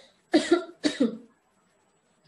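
A woman coughing twice in quick succession, about half a second apart.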